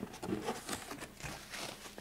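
Soft rustling and scraping of cardboard and paper packaging as hands reach into a box and lift out a paper-wrapped item, with a few small clicks.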